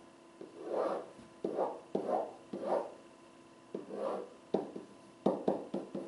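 Pen strokes on an interactive whiteboard: a series of about eight short scrapes and taps as lines and letters of a table are drawn, with brief pauses between them.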